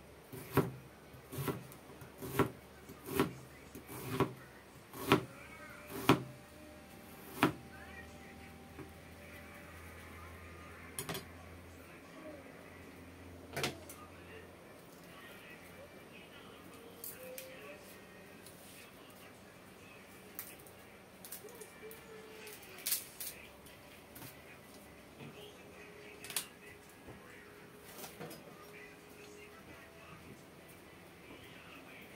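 Knife chopping an onion on a cutting board, about one sharp cut a second for the first eight seconds, then occasional knocks and clatter of kitchen things being handled.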